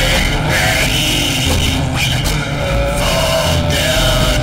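Loud, dense atonal synthesizer noise music: a thick wash of distorted noise over a blocky, stuttering low end. A held tone comes in near the end.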